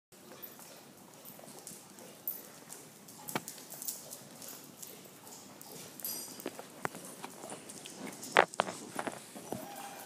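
Dogs' claws clicking and tapping on a hard, smooth floor as the puppies walk about, in scattered irregular taps, the loudest a little after eight seconds in.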